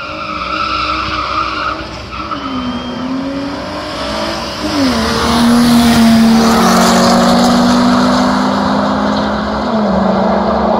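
Cars, a Ford Focus ST and a BMW, accelerating hard from a standing start, their engine notes climbing and dipping at gear changes about two seconds in, near five seconds and near the end. They pass close by about five seconds in, the loudest part, holding a steady high engine note.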